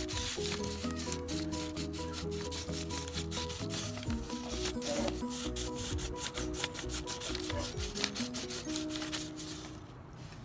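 Crayon rubbed quickly back and forth on paper laid over a leaf, a rapid series of scratchy strokes, with a melody of background music underneath.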